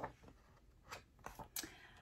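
Pages of a hardcover picture book being turned: a few faint, brief papery rustles in the middle of the pause.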